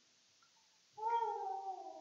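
A single faint, high-pitched, meow-like cry about a second long, falling slightly in pitch, starting about a second in.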